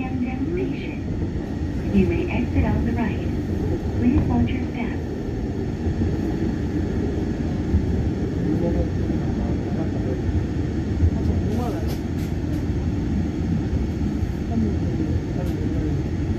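Driverless light-rail train running along elevated track, heard from inside the car: a steady low rumble of wheels on rail, with a few short clicks about twelve seconds in as it nears the station.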